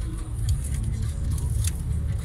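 Car cabin noise while driving: steady low engine and road rumble heard from inside the car, with two short clicks.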